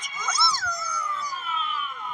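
Cartoon creature voice howling: a quick yelp about half a second in, then one long wail that falls slowly in pitch.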